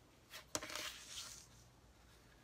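A sheet of cardstock being lifted and slid across a paper trimmer: a sharp tap about half a second in, then a short rustle of the card sliding that lasts under a second.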